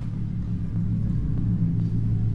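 A steady low hum with no speech.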